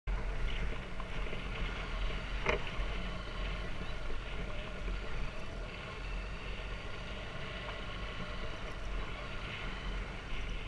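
Dirt bike engine running steadily while riding a bumpy dirt track, mixed with wind noise, with one brief knock about two and a half seconds in.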